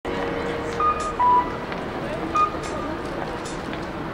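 Busy city street background noise with indistinct voices, broken by short electronic beeps: two in quick succession about a second in and one more about two and a half seconds in.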